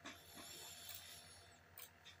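Near silence with a soft hiss and one faint, sharp click near the end, from computer play in an online chess game.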